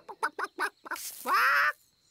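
Cartoon hen clucking: a run of quick short clucks, then one longer squawk just past the middle.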